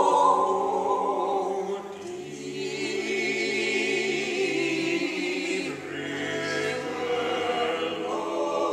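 Unaccompanied mixed vocal quartet, two women and two men, singing in harmony. The notes are long and held with a slight waver, with a brief dip about two seconds in.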